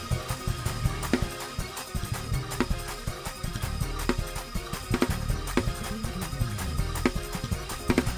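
Up-tempo gospel praise-break music: a Hammond organ playing fast chords over drums hitting about twice a second.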